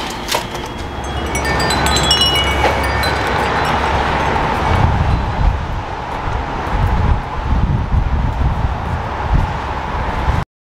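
Wind buffeting the microphone in uneven gusts over a steady wash of outdoor traffic noise, with a few short high squeaks about two seconds in.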